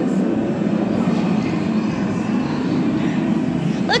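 Steady low rumble of indoor background noise, with a faint murmur of voices mixed in.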